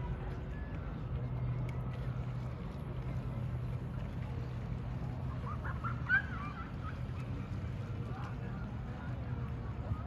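Steady low outdoor rumble with a brief flurry of short, high calls or cries about six seconds in, one of them sharper and louder than the rest.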